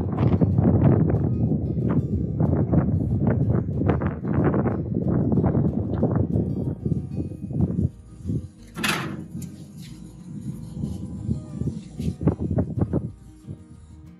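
Wind buffeting the microphone, with wire cooking racks rattling and scraping as a loaded rack is slid into a Pit Boss vertical smoker. There is a sharp metal clank about nine seconds in, then lighter knocks.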